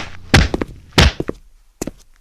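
Two heavy thuds of blows landing in a scuffle, about two-thirds of a second apart, followed by a few light taps.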